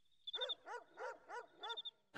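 A dog barking in a quick run of about six barks, faint, with crickets chirping in short high trills under it: a night-time ambience.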